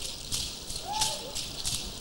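Dancers' rattles shaken in a steady rhythm, about three strokes a second, in time with their steps, with a faint short call about halfway through.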